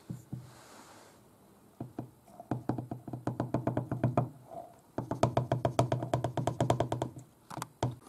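Glass bowl being tapped rapidly while held upside down over a plastic beaker, knocking the last flour out. The taps come in two quick runs with a short pause between them, each knock with a slight ring.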